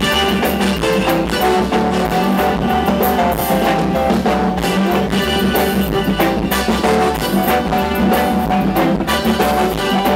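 Live band playing on stage: electric guitar, bass and drum kit keep up a steady groove.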